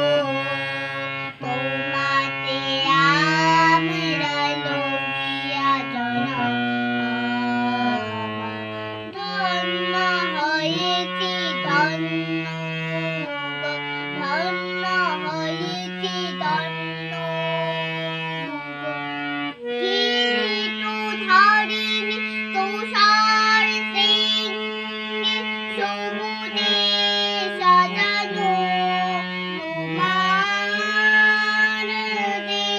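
A harmonium, a hand-pumped reed organ, plays sustained chords and drone notes while a young girl sings a melody over it. About two-thirds of the way through, the lower held notes give way to a single steady low drone.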